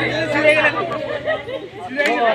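Several people talking at once: overlapping chatter with no single clear speaker.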